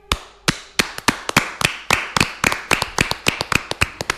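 Hand clapping by one or a few people after a song ends, a quick, slightly uneven run of sharp claps, about five or six a second.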